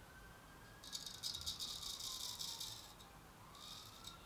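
Thomas Turner straight razor cutting two days' stubble on the cheek: a crisp crackling stroke of about two seconds, then a shorter one near the end. The edge sounds fine, a sign that it cuts well without rehoning.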